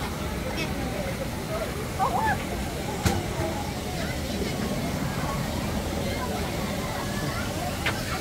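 Outdoor ambience of a busy swimming pool: distant voices of swimmers over a steady hiss, with a short faint call about two seconds in and a single sharp click about a second later.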